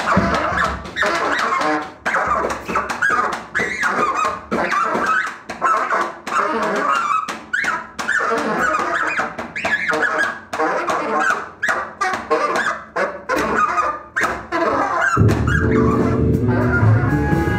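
Saxophone playing short, squealing and honking phrases over sparse sharp hits, with little underneath. Near the end the full band, with bass and electric guitar, comes in loudly.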